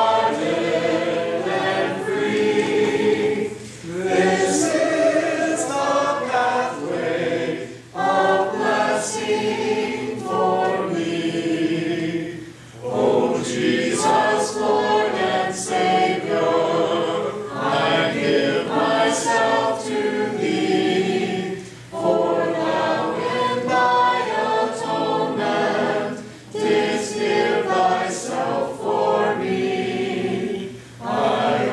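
A church congregation singing a hymn a cappella, many voices together with no instruments, in sung phrases with brief dips for breath every few seconds.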